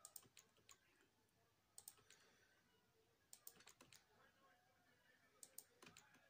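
Faint typing on a keyboard: short clusters of key clicks every second or two, over otherwise near-silent room tone.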